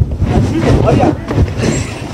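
People's voices during a scuffle, over a steady low rumble.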